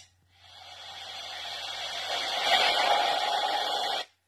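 Sound effect of an animated subscribe button: a short click, then a rushing whoosh that grows louder over about three seconds and cuts off suddenly.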